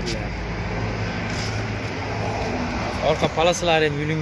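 A steady low hum over even background noise, then a person talking from about three seconds in.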